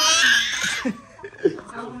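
High-pitched laughter, loudest and rising in pitch over about the first second, then a few shorter laughs.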